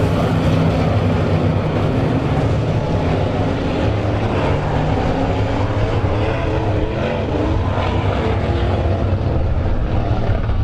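Several dirt-track modified race cars' V8 engines running on the oval, a loud steady drone of overlapping engine notes that shift as the cars go around.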